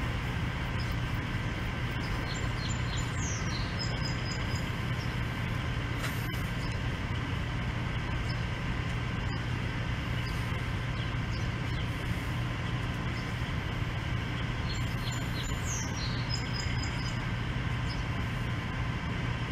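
Steady machine-like hum over constant outdoor background noise. A bird sings a short, high, falling phrase twice, about three seconds in and again around fifteen seconds.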